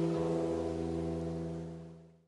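The closing chord of a mantra song ringing out on the band's guitars and instruments: several steady tones held and slowly dying away, fading out near the end.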